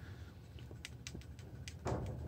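A quiet pause between sentences: a few faint clicks in the middle, then a breath taken near the end.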